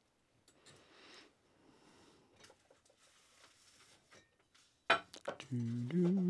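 Faint rustling of paper mail and small clicks and knocks as envelopes are picked up and handled on a desk. A sharper knock comes about five seconds in, followed by a man's voice.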